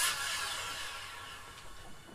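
Dance music playing in the room, hissy and distorted through the camera's microphone, fading steadily out over the two seconds.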